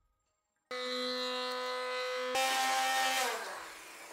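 Immersion blender motor switched on under a second in, running with a steady whine, stepping up to a higher speed about halfway through with a rougher, churning sound as it purées the cherries, then winding down with falling pitch near the end.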